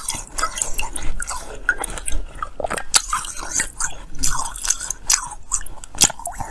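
Block of frozen ice being bitten and chewed close to the microphone: an irregular run of sharp crunches and cracks between the teeth.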